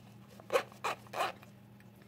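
Zipper of a small round fabric earbud case being pulled shut in three short rasps.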